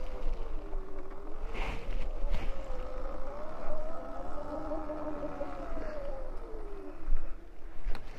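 Electric dirt bike's motor whining as it rides a dirt trail, the pitch falling, climbing and falling again with speed before fading away near the end. A low wind rumble on the microphone runs underneath.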